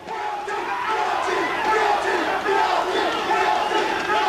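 A large crowd shouting, many voices overlapping at once, swelling up at the start and then holding steady.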